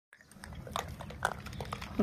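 A troop of gray langurs moving about and feeding on concrete: faint scattered taps and clicks with a few brief squeaky sounds, over a low steady rumble.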